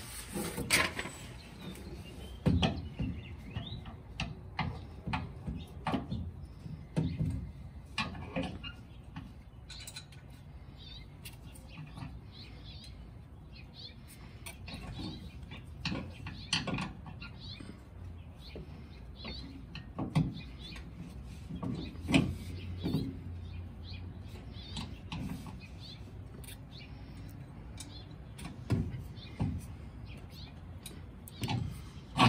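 Irregular clicks, taps and knocks of small metal hardware being handled and fitted by hand: a hex bolt, lock washer and flat washers going through a bracket on a pickup's frame. A few sharper knocks stand out among them.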